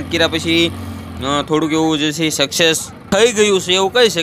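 Men's voices talking and calling, with a steady low hum beneath them that stops about a second and a half in.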